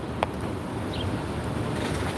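Steady low rumble of city street background noise, with a single click about a quarter second in.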